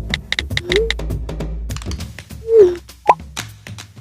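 Cartoon phone sound effects over soft background music: a run of quick taps and beeps as a finger types on a touchscreen, then two short sliding blips, the second the loudest, and a brief high blip as text messages pop up on the screen.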